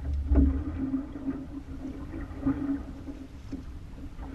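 Water slapping against a small skiff's hull, with wind rumbling on the microphone, loudest in the first second. A faint steady hum and a few light knocks run under it.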